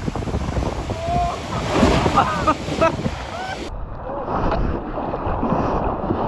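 Shorebreak waves crashing onto the beach, with people's voices heard over the surf. A little under four seconds in it cuts to water sloshing right around a camera held in the surf, with wind buffeting the microphone.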